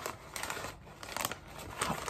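Brown kraft-paper mailer being torn open by hand, its paper crinkling in a few short, irregular rips and rustles.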